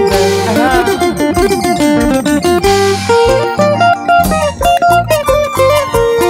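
A live band playing an instrumental passage, with a guitar picking fast runs of notes over bass and percussion.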